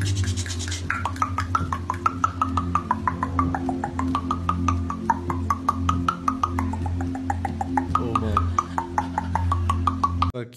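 A woman's rapid, stuttering vocal sounds, about six pulses a second, with a pitch that wavers up and down. They come from the person receiving a kundalini activation session and sound over a steady, low droning background music.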